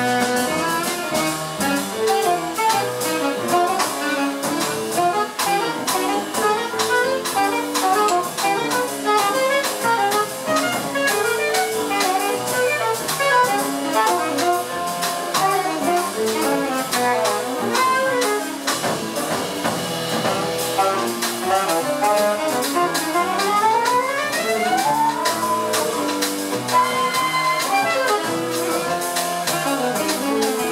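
Live jazz from a septet of saxophones and other horns over piano, double bass and drum kit, with cymbals ringing steadily through. A fast upward run of notes rises near the end.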